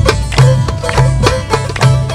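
Turkish folk dance music: a plucked string instrument played over a steady beat.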